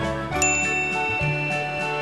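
Background music of held notes with a bright bell-like ding about half a second in that rings on.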